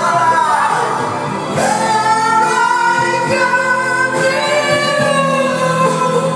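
A man singing karaoke through a microphone over a loud backing track, holding long notes that slide in pitch.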